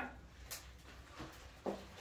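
Faint handling noise from a large round wooden board being moved and stood on its edge, with a light knock about half a second in and a few softer bumps after.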